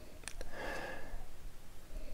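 A couple of small mouth clicks, then a short breath drawn in about half a second in, from a whisky taster with the tasting glass held to his nose and mouth.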